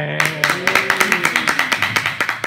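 Applause from a small audience, the claps coming thick and uneven, with a person's voice over it in the first part.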